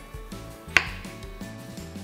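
One sharp knife chop just under a second in: a santoku knife slicing through yellow squash and striking the cutting board. Background music plays throughout.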